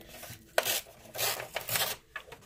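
A page being torn out of a coloring book: three short rough rips of paper, starting about half a second in.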